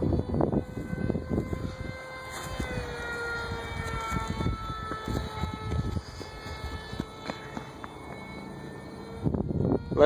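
Radio-controlled model airplane's motor whining steadily high overhead, its pitch sliding down a little about three seconds in as the plane flies off, with wind buffeting the microphone.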